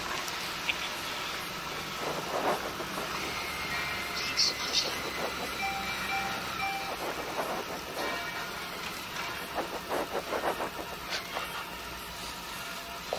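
Honda ST1300 Pan European motorcycle's V4 engine running steadily at low road speed with wind and road noise, heard from a helmet camera as the bike slows.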